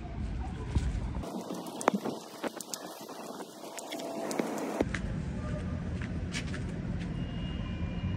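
Outdoor city street noise: a steady low rumble and hiss. The rumble drops away for a few seconds in the middle, leaving a thinner hiss with a few sharp clicks.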